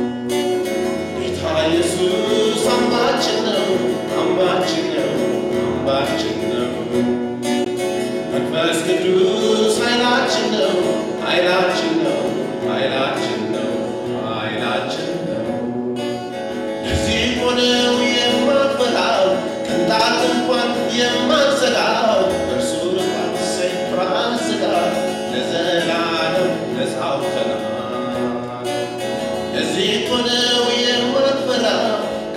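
A man singing a worship song to his own acoustic guitar, picked up through a microphone.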